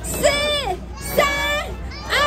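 A loud, high-pitched voice shouting a race-start countdown, one drawn-out number about every second, with two calls in this stretch, just before the half-marathon start.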